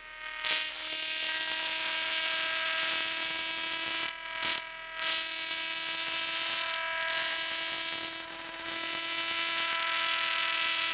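A small Slayer exciter Tesla coil arcing from its stainless steel top load: a loud, harsh electric buzz at a steady pitch with a hiss over it. It drops out twice briefly a little after four seconds in.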